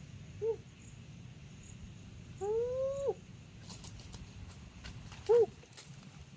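Three short pitched animal calls: a brief one near the start, a longer rising one in the middle, and another brief one near the end.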